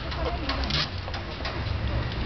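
Outdoor street background: a steady low rumble with faint voices of people nearby and a few light knocks.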